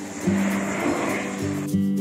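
A large bundle of sparklers flaring up all at once with a rushing hiss that stops abruptly after about a second and a half, over background music with a melody.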